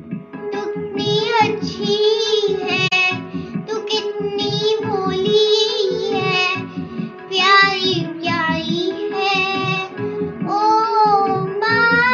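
A child singing a melodic song with a wavering, ornamented line over instrumental backing music, with a steady held tone and a pulsing low beat.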